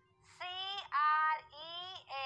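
A very high-pitched, child-like voice in three short sing-song phrases whose pitch glides up and down, over a faint steady hum.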